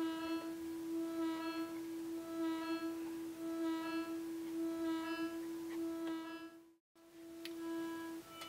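Buchla modular synthesizer patch: a steady drone with a brighter, overtone-rich tone swelling in and fading out about once a second, as the 281e quad function generator scans the 259e and 258v oscillators through the 292e Quad Dynamics Manager's lowpass gates. The sound cuts out briefly near the end.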